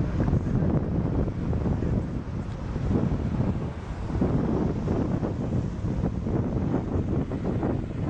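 Wind buffeting an outdoor camera microphone: a steady, low, rushing rumble.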